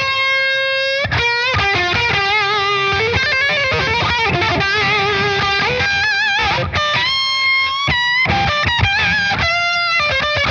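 Electric guitar (Fender Double Esquire Telecaster) through a Redbeard Effects Honey Badger octave fuzz pedal with every knob at noon, into a valve amp on light crunch with plate reverb. It plays a thick, fuzzy lead line of held notes with wide vibrato, with short breaks between phrases.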